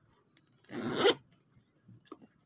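Metal zipper on a handbag's front pocket pulled open in one quick stroke of about half a second, a second or so in.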